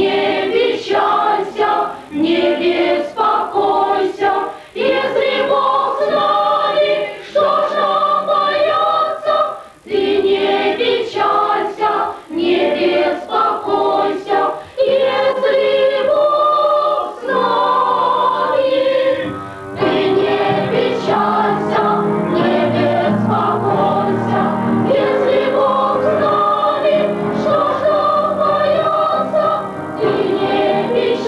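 A youth choir singing a Christmas song in sung phrases with short breaks between them. About twenty seconds in, the sound fills out with a lower part underneath.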